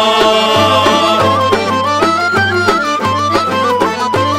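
Bulgarian folk dance music played instrumentally, without singing: a stepping melody line over a tambura and a tapan bass drum beating an even pulse, a little under two strokes a second.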